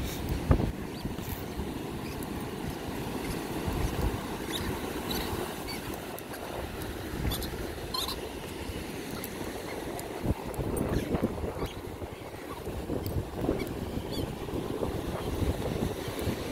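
Steady wash of ocean surf on a beach, with wind rumbling on the microphone.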